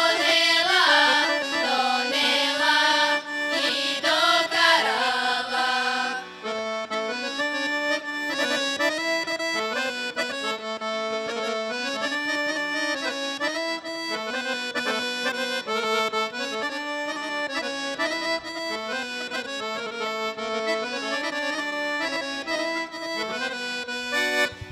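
Women's group singing a Bulgarian folk song with piano accordion accompaniment. About six seconds in the voices stop, and the accordion plays on alone in an instrumental interlude.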